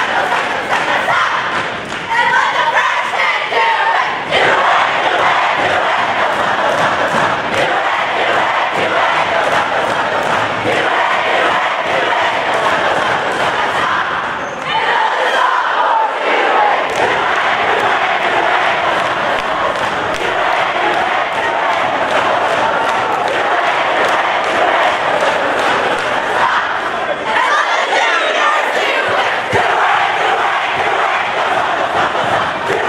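Large crowd of students cheering and yelling together in a gymnasium, a dense, continuous roar with a brief dip in loudness about halfway through.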